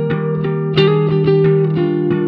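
Electric guitar playing a lead line of quickly picked notes that step downward, over an electric bass holding a low note.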